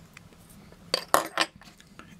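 Protective backing film being lifted off double-sided tape on a metal lens adapter with a scalpel tip: a quick cluster of three short clicks and crackles about a second in.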